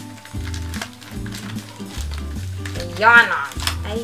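Thin plastic packaging crinkling and rustling as it is pulled open by hand, over steady background music. A short vocal exclamation about three seconds in is the loudest sound.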